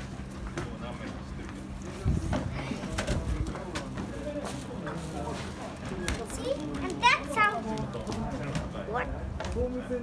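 A child's voice with a short, high exclamation about seven seconds in, over a steady low hum. Scattered knocks and clicks come as a snack is taken out of the vending machine's pick-up flap.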